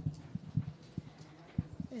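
Soft, dull, irregular knocks and bumps, about eight in two seconds: handling noise on a conference desk, picked up by a desk microphone as papers and objects are moved.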